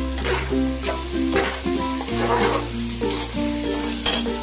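Food frying and sizzling in a pan while being stirred, with a scraping rush about once a second, under background music.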